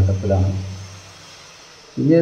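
A man speaking to the camera for about a second, then a pause of about a second in which only faint room hiss remains.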